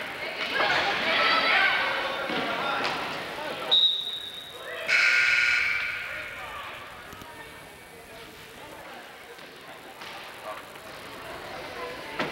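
Gym crowd cheering and shouting, then a referee's whistle blown once for about a second, followed at once by the scoreboard buzzer sounding for about a second as play stops. The crowd then settles to a murmur.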